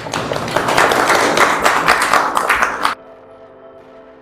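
Audience applauding, loud and dense with many individual claps, cut off suddenly about three seconds in. Quieter music with held steady tones follows.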